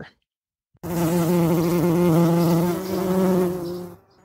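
A bee's buzz, loud and steady in pitch, starting about a second in and lasting about three seconds.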